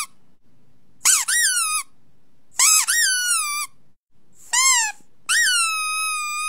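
A series of high-pitched squeals, each rising and then sliding down in pitch, with short gaps between them; the last one levels off and is held for over a second.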